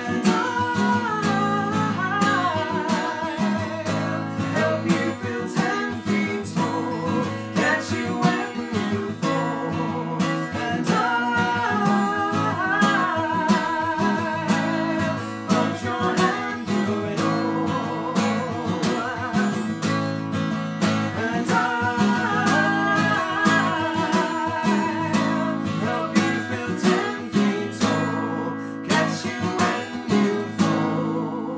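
Live acoustic folk song: a woman singing with vibrato over a steadily strummed acoustic guitar, with a man's voice joining in at times.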